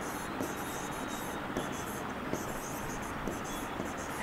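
A pen stylus writing on an interactive display board: a run of short, faint scratchy strokes as a word is handwritten.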